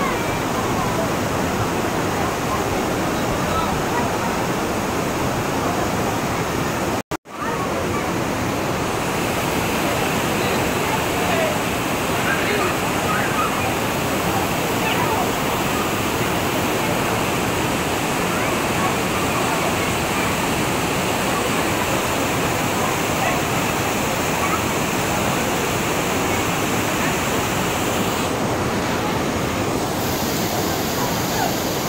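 The Kaveri River's rocky cascade at Hogenakkal Falls: a steady, loud rush of white water pouring over boulders into a pool. The sound drops out for a moment about seven seconds in.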